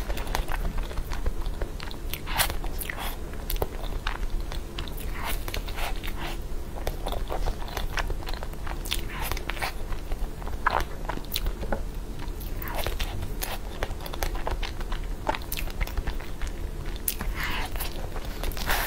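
Close-miked chewing and mouth sounds of someone eating a soft, fruit-filled pastry, with irregular small clicks and smacks, picked up by a clip-on lapel microphone.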